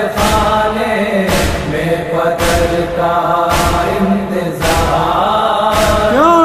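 Nauha lament: a group of voices holding a slow chanted line without clear words, kept in time by heavy beats about once a second, the matam (chest-beating or hand-beating) that keeps time in a nauha.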